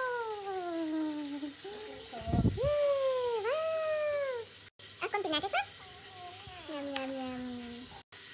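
A toddler whining in several long, drawn-out cries that slide down in pitch, one rising and then falling, with a low thump about two and a half seconds in.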